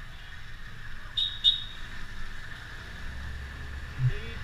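Steady low rumble of a vehicle rolling along a lane, the ride's engine, road and wind noise. Two short, high chirps sound close together just over a second in.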